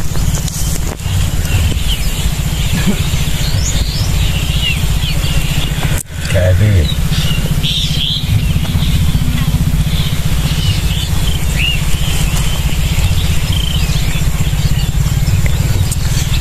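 Outdoor field ambience: short bird chirps over a steady low rumble, which briefly drops out about six seconds in.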